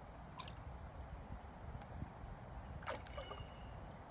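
Faint outdoor ambience at the water's edge: a steady low rumble with two short high chirps, one about half a second in and a stronger one about three seconds in.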